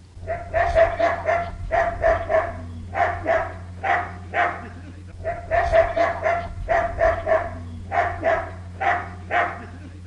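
A dog barking over and over, about two barks a second, with a short break near the middle, over a steady low hum.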